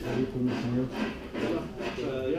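Voices talking in the background, with no words clearly caught.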